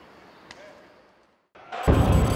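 Faint open-air ambience with one short slap about a quarter of the way in, a high-five, then a moment of silence. Near the end a loud sound-effect sting starts with a heavy low hit, opening an animated logo sequence.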